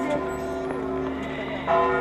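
Church bells ringing: several held tones hum on, and a fresh strike comes near the end.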